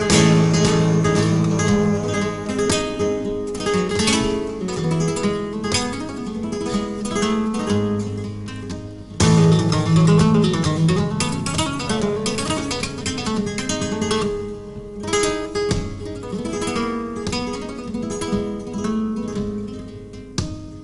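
Flamenco guitar playing a solo passage in the soleares between sung verses, a quick run of plucked notes and chords. A loud chord comes in sharply about nine seconds in.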